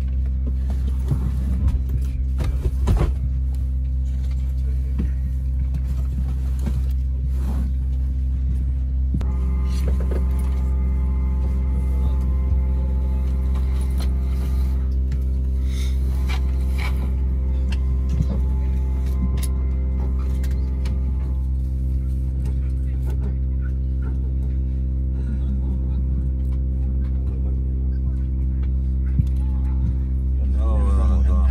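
Steady low drone of a parked Boeing 737-700's cabin, heard from a seat, with scattered light clicks and knocks. A higher steady tone joins the drone for about ten seconds in the middle.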